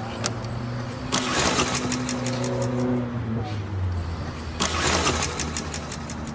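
An engine running steadily, with two louder, noisier surges, about a second in and again near five seconds.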